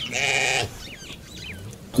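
A sheep bleats once, a single call of under a second. It is followed by a few faint chirps.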